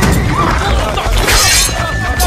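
Action-film fight soundtrack: loud background score with shouting and impact effects, and a crash of something shattering about a second and a half in.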